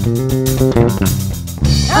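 Contemporary worship band playing a brief instrumental passage between sung lines: bass guitar, guitars, drum kit and keyboard. A lower bass note comes in near the end and the lead vocal returns just as the passage ends.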